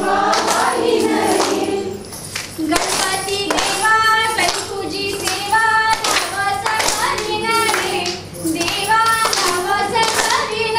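A group of women singing a fugdi song together while clapping their hands in time as they dance.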